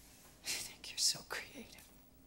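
A woman speaking a few words in a breathy near-whisper, starting about half a second in: film dialogue.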